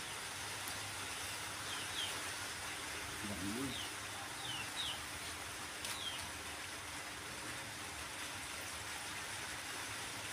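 Quiet outdoor background with a few faint, short bird chirps scattered through it, and a brief faint voice about three seconds in.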